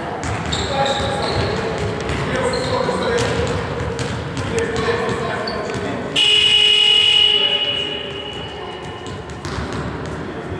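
A sports-hall horn sounds a sudden, loud, high blast about six seconds in. It holds for just over a second and then fades. Voices chatter in the hall and basketballs bounce on the wooden floor throughout.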